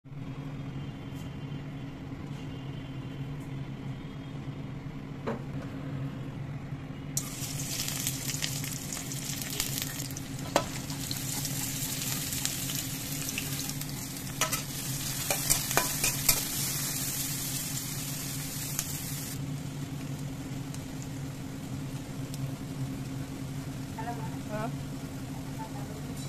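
Food sizzling in hot oil in an aluminium kadai for about twelve seconds in the middle, with a few sharp clinks of a metal spatula against the pan, over a steady low hum.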